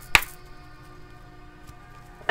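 A sharp click or two as a tarot card deck is picked up by hand, right at the start, followed by quiet with faint steady background tones.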